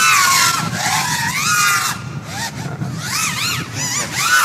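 A 5-inch FPV racing quadcopter on a 6S battery flying laps, its brushless motors and props whining. The pitch swoops up and down with every throttle change, in a quick run of short rising-and-falling arcs near the end.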